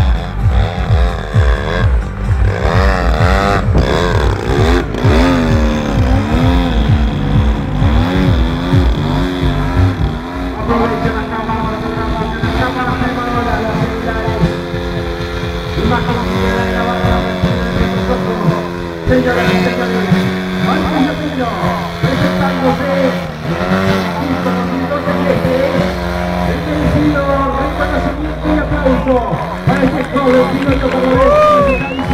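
Large-scale RC aerobatic plane's engine and propeller, the pitch rising and falling again and again as the throttle is worked through hovering and torque-roll manoeuvres.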